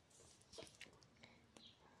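Near silence with a few faint clicks from a small cosmetic bottle being handled close to the microphone.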